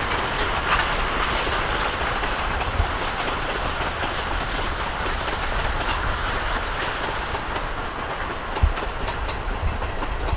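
Two steam locomotives double-heading a passenger train past, a steady rush of steam exhaust over the rumble of wheels on the track, easing slightly toward the end with an occasional sharp knock.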